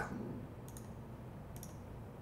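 Two faint, sharp clicks about a second apart over quiet room noise.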